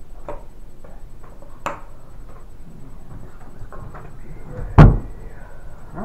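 Handling noise on a tabletop miniatures game: a couple of light clicks and taps of plastic pieces and tools, then one loud, deep thump on the table just under five seconds in.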